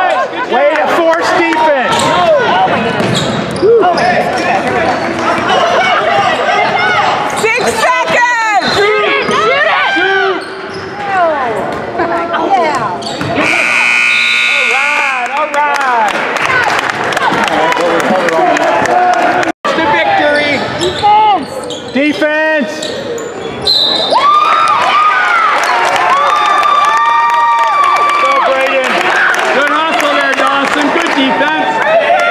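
Basketball bouncing on a gym's hardwood court, with spectators and players shouting in the echoing hall. A whistle blows for about two seconds around the middle.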